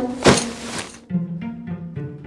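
A short swishing whoosh as a folded pop-up tent is flung through the air. Then background music takes over: low plucked string notes, about three a second.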